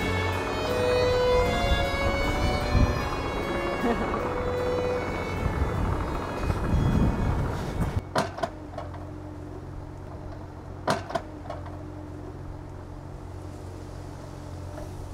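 Classical string music plays for about the first eight seconds, then stops. After that a B25V mini excavator's diesel engine is heard running steadily, with a few sharp metallic clanks from the machine as it works the soil.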